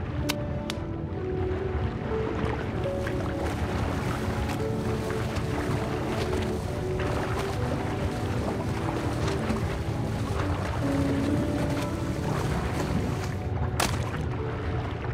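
Slow background music with long held notes over a steady, muffled underwater rumble, with a few brief clicks near the start and the end.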